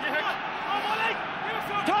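Men's voices shouting over a steady stadium crowd as the scrum sets. Near the end comes the referee's loud call of "Touch!", the second step in the crouch, touch, pause, engage scrum sequence.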